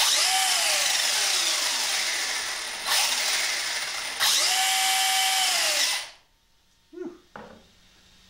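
ARRMA Typhon 6S BLX RC buggy's brushless motor and four-wheel-drive drivetrain spinning the wheels in the air on a stand under throttle blips: a loud whirring whine that rises and falls, surges again about three and four seconds in, then cuts off about six seconds in.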